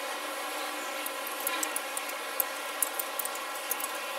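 Laptop keyboard being typed on: an irregular run of light key clicks over a steady background hum.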